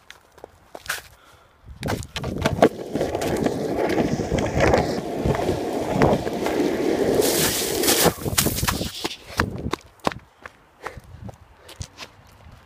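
Longboard wheels rolling fast over asphalt, heard from a camera riding on the board: after a few clicks, a loud rolling rumble full of rattles and knocks starts about two seconds in and lasts about seven seconds. A hiss joins it near the end as the board runs into slushy snow, then the rumble stops and only scattered knocks remain.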